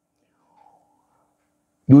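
A pause in a man's speech: near silence with only a very faint, brief sound about half a second in, then his voice resumes near the end.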